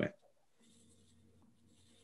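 Near silence: faint room tone in a pause between speakers on a video call, after the last word of a question.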